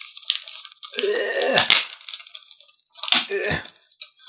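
Scotch tape being peeled and pulled off a plastic sleeve, crackling and ripping, with two louder pulls: one about a second in and another around three seconds in.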